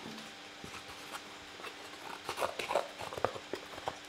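Scissors snipping and handling moulded-pulp egg-box cardboard: a faint, irregular run of small clicks and crackles.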